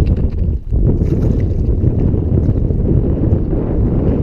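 Wind buffeting the camera microphone, a steady low rumble with a brief lull about half a second in.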